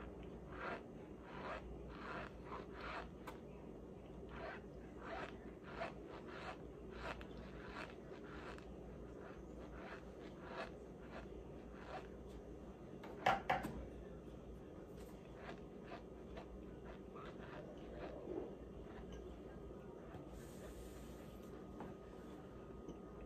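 Dry cornstarch being chewed by mouth: a steady run of squeaky crunching chews, about two or three a second, that thins out after about twelve seconds. A brief louder rustle comes about thirteen seconds in, when the cardboard starch box is handled.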